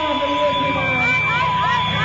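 Crowd in front of a live-band stage shouting and cheering, many voices rising and falling at once, over a steady high tone and a low hum from the PA.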